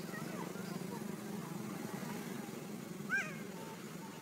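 A macaque gives a short, high squeak that rises and falls in pitch about three seconds in, after a few fainter squeaks near the start, over a steady low background rumble.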